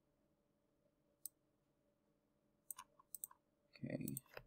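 Near silence broken by a few faint computer mouse and keyboard clicks: one about a second in, then a quick cluster of several near the end.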